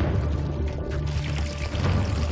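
Water pouring steadily into a metal tank, under background music with a low steady drone.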